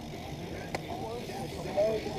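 BMX bike rolling over skatepark concrete: a steady low rumble of tyres and wind on the microphone, with a single sharp click a little under a second in. Faint voices are heard over it.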